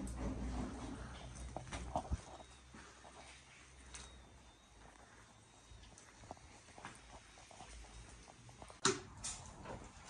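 Faint crunching and knocking of debris under footsteps over a low rumble, with two sharp sounds close together near the end.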